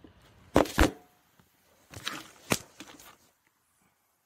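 Handling knocks and clicks of a plastic turkey baster against a plastic measuring cup: two sharp knocks close together about half a second in, a few softer clicks around two seconds, and another sharp click about two and a half seconds in.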